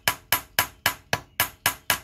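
Ball-peen hammer tapping on the welded-on line fitting of a rusty factory Toyota Tundra steering rack housing, metal on metal, in an even run of about four strikes a second. It is a weld integrity test: the factory resistance weld does not budge or flex under the taps.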